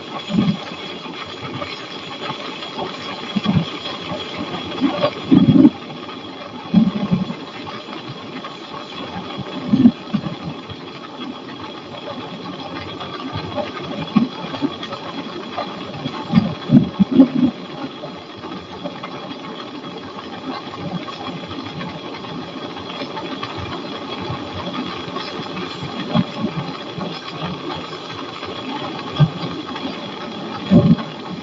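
Flexwing microlight trike's engine and pusher propeller droning steadily in level cruise flight. Over it, irregular short low thumps of wind buffeting the microphone.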